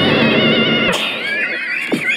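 A man's voice made into a high, wavering warble by an iPad voice-effects app, breaking off about a second in and followed by falling glides in pitch.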